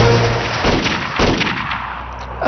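Gunfire from a rifle: several sharp shots in quick succession, thinning out toward the end.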